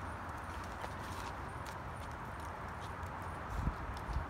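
Toddlers' balance bikes rolling and small shoes scuffing and tapping on a concrete sidewalk, faint and irregular, over a steady outdoor hiss.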